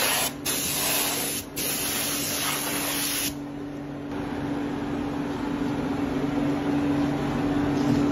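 A compressed-air spray gun hissing at shoe-sole moulds in long blasts, let off briefly twice and stopping about three seconds in. After that a steady low machine hum carries on.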